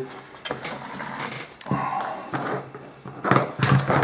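Waxed linen thread being drawn through the stitching holes of wet leather during hand stitching, along with the light handling of the leather. There are a few short, noisy pulls, the loudest about three and a half seconds in.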